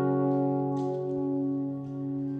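A live band's held chord, a steady sustained sound with no new notes, slowly fading.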